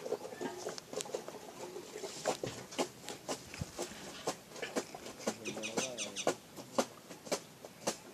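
Small steel diesel fuel-injection-pump parts, the plunger and its barrel, clicking and clinking in the hands as they are fitted together, with many irregular sharp taps. A brief wavering call comes in about six seconds in.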